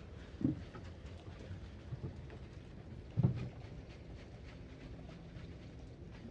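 Faint rustling and water noise as a wet fishing net is handled over the water, with two soft low thumps.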